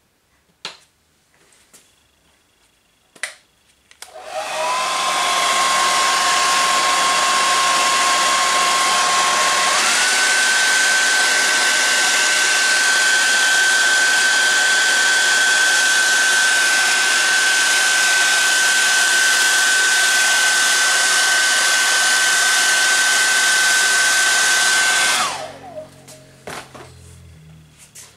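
A handheld hair dryer starts about four seconds in and blows steadily with a whine that steps up in pitch about ten seconds in. It is switched off a few seconds before the end and winds down. It is being used to speed-dry wet watercolour paint.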